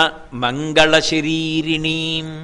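A man's voice chanting a devotional verse, holding a steady, level pitch, with a brief break about a second in.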